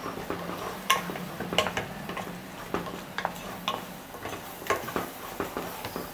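Wooden spatula stirring thick masala in a pressure-cooker pot, knocking against the pot's metal sides in irregular light clicks.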